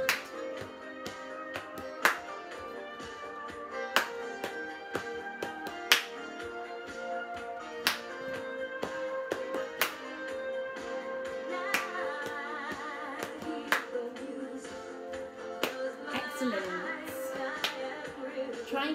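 Recorded children's song music playing, with hand claps and body-percussion taps in time to it; the sharpest claps land about every two seconds.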